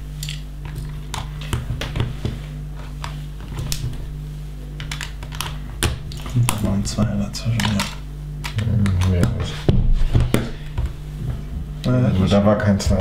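LEGO bricks clicking and clattering as loose pieces are sorted through on a tabletop and pressed onto a roof plate: a steady string of small sharp clicks.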